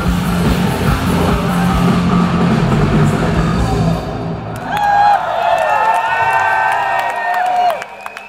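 Live rock band playing loudly, the song ending about four seconds in; then the crowd cheers with held shouts and whoops, which cut off sharply near the end.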